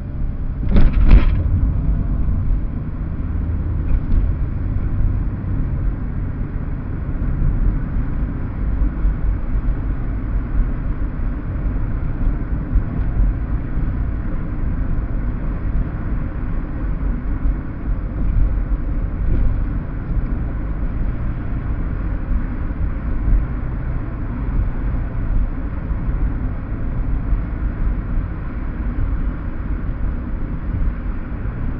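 Steady low road and engine rumble of a car driving in city traffic, heard from inside the cabin, with a short louder noise about a second in.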